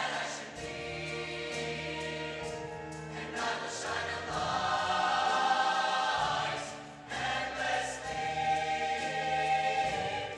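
Large mixed-voice show choir singing, holding long chords that swell and fall back, with a short dip in loudness about seven seconds in.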